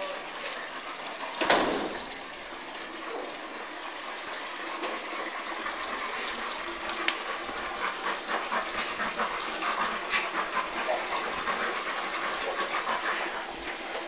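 Puppies playing, with one loud short cry from a puppy about a second and a half in, over a steady rushing hiss. Quick clicks and taps follow through the second half.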